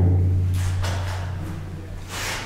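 Low, steady hum of the stone tower chamber's echo left ringing after a spoken phrase, slowly dying away.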